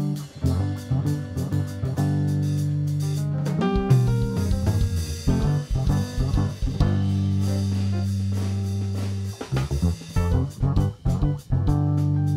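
A live funk band playing: electric bass carrying long held low notes under a busy drum kit, with a cymbal wash around the middle.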